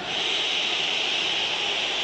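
Football stadium crowd noise, a steady high-pitched din that swells at the start, as the crowd waits for a penalty kick.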